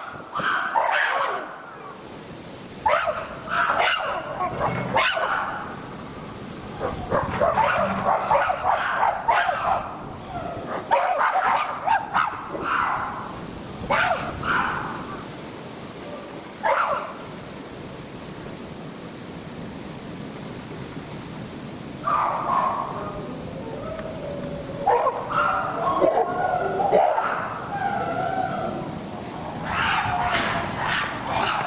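Chimpanzees calling in repeated bouts of a few seconds each, separated by short pauses, with a longer quiet stretch past the middle before the calls resume.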